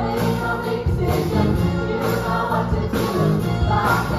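A stage cast singing an ensemble number in chorus, accompanied by a live electronic keyboard.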